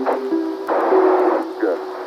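Sampled Apollo 11 lunar-landing radio transmission over held music tones. A band-limited hiss of radio static runs for under a second in the middle, and a radio voice says "Good" near the end.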